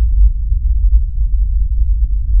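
Loud, deep rumbling sound effect, low and throbbing, with no higher tones in it.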